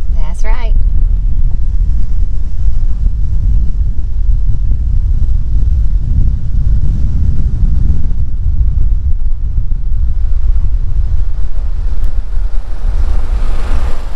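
Car driving, with a loud, steady low rumble of road noise and wind on the microphone; a hiss builds up near the end.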